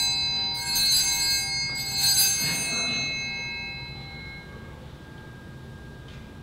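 Altar bells rung at the consecration of the wine at Mass: a ring already sounding, struck again about half a second in and about two seconds in, each ring dying away slowly until it fades out a few seconds later.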